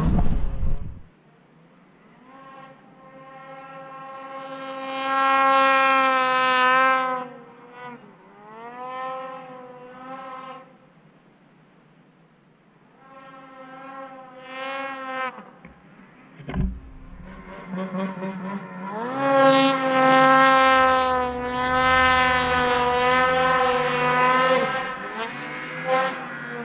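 Snowmobile engine revving in several bursts, each one climbing in pitch, holding high and then falling away. A short dull thump comes about two-thirds of the way through.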